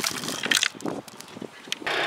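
Hand-cranked broadcast seed spreader being turned: light clicks and a rattle of seed thrown off the spinning disc, louder for the first half second and fainter after. Just before the end a steady mechanical noise comes in, from the tractor-driven rototiller.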